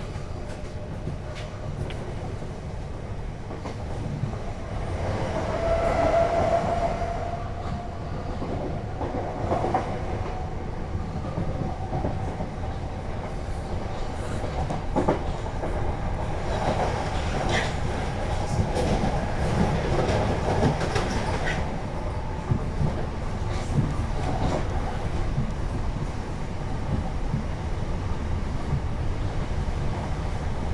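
Cabin noise of a Class 376 Electrostar electric multiple unit running on the line: a steady low rumble with clicks and clatter of wheels over rail joints, most frequent in the middle. Above it a thin electric motor whine climbs slowly in pitch as the train gathers speed.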